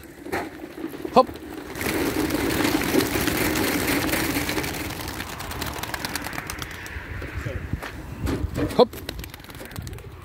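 A flock of young racing pigeons taking off together in a loud rush of flapping wings that swells about two seconds in and fades over the next few seconds.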